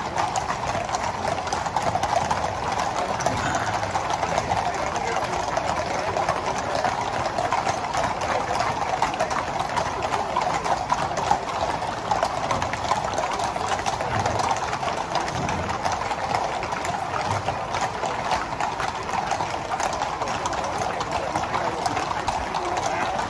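Many horses walking in a procession on a tarmac road, their hooves making a dense, continuous clip-clop clatter that never stops.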